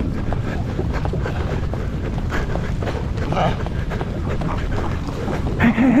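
Wind buffeting an action camera's microphone in a steady low rumble, with quick footfalls on sand as the wearer moves through a Cape fur seal colony. A seal calls briefly about three seconds in, and a voice cuts in at the very end.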